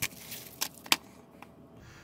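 Small plastic packet crinkling and crackling as it is cut open with a small hand tool, in a few short sharp crackles; the loudest comes about a second in.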